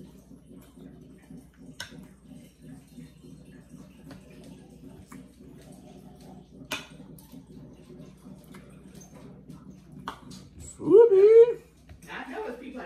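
A knife and fork clink faintly on a plate, with a few sharp clicks over a low murmur. Near the end comes a short, loud, high-pitched cry that rises and wavers.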